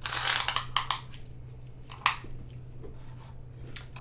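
Crinkling and rustling of the clear plastic film covering a diamond painting canvas as it is handled: a cluster of crinkles in the first second, then single crackles about two seconds in and near the end.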